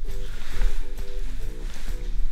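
Light background music: a run of short, bouncy notes over a low pulsing bass.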